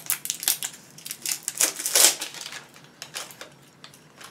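Packaging being handled and unwrapped by hand, crinkling and crackling in quick irregular bursts, loudest about halfway through.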